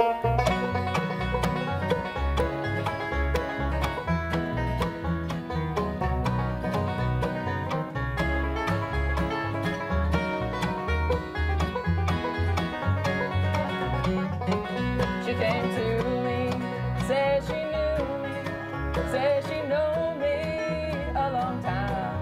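A live bluegrass band playing an instrumental opening: five-string banjo picking, fiddle and acoustic guitar over a bass line keeping a steady beat. The fiddle melody stands out more in the last third.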